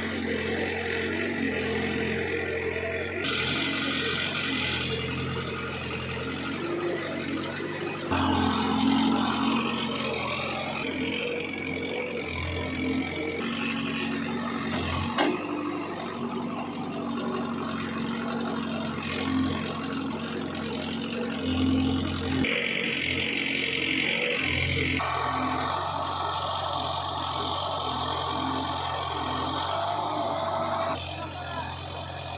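Diesel engine of a Case 851EX backhoe loader running steadily, working its hydraulics as it digs and loads soil, with a tractor engine running alongside. The engine note gets louder about eight seconds in, and there is a single knock about fifteen seconds in.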